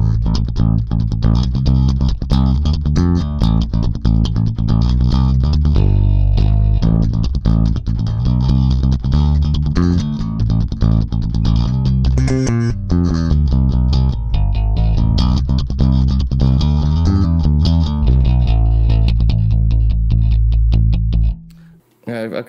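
A Music Man StingRay four-string electric bass played with a pick: a continuous run of fast picked notes and riffs with sharp attacks, stopping abruptly near the end.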